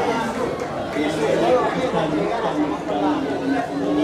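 Several people talking at once, overlapping chatter with no single voice standing out.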